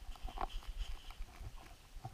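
Faint irregular low rumble of wind buffeting the microphone, with a few scattered crunches of loose snow close to the camera, one about half a second in.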